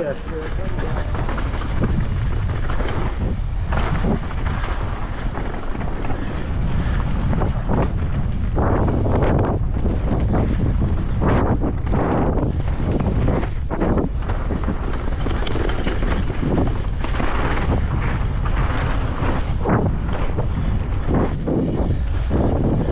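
Wind buffeting the microphone of a helmet- or body-mounted camera on a mountain bike riding fast down a dirt trail, a steady heavy rumble. Knobby tyres on dirt and the bike's rattle come through as repeated short louder rushes over the bumps.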